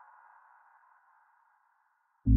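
Near silence: the last sustained tone of a soft background music track fades out over about the first second.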